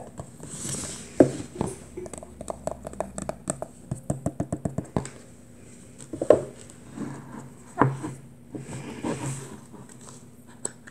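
Hands handling a cardboard iPhone box: a soft scrape as the lid slides off, a knock about a second in, then a run of quick light taps on the cardboard, with a few more knocks and rustles later.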